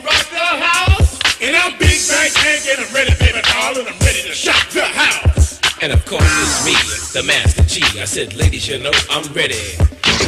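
Hip hop track from a DJ mix: a rapped vocal over a drum beat with a steady kick.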